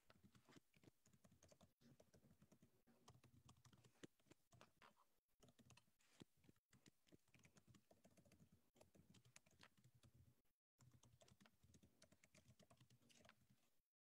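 Faint typing on a computer keyboard: a rapid, irregular run of key clicks that breaks off briefly about two-thirds of the way through and stops just before the end.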